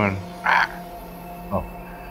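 A man's short breathy vocal noise about half a second in, after the end of his sentence, then a faint steady background hum.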